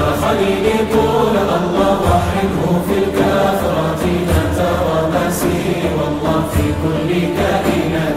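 Live ensemble music: a choir of voices chanting together over drums and stringed instruments, with deep drum strikes about every two seconds.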